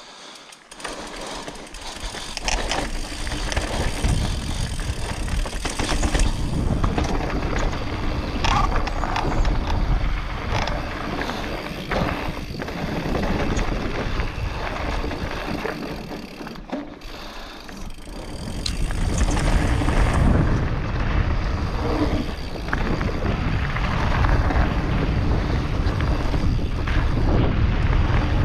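Mountain bike ridden down a rocky dirt and gravel trail: wind buffeting the camera's microphone with a deep rumble, and the bike clattering and rattling over stones. It builds up about a second in as the bike gets moving, eases briefly around two thirds of the way through, then picks up again.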